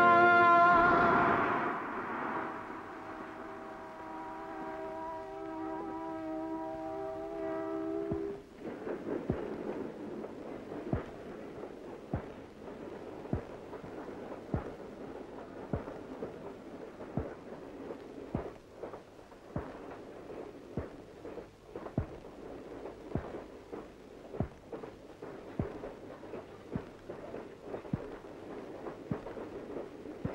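Film background score: a sustained chord of held tones that fades out over the first eight seconds. It gives way to a sparse run of sharp clicks and knocks at an uneven pace over a low hiss.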